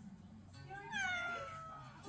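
Domestic cat giving one long meow, starting a little under a second in, its pitch rising briefly and then slowly falling.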